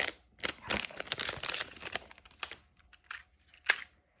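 Clear plastic shrink-wrap crinkling and crackling as it is peeled off two plastic cases of lead refills, thinning out to a few light plastic clicks as the cases are handled, the sharpest click near the end.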